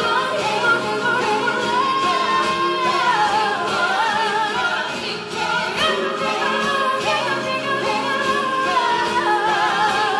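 Female pop singer belting live into a microphone with vibrato, over layered recorded vocals of her own voice.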